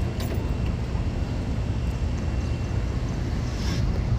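Wind rumbling steadily on a phone's microphone while walking outdoors.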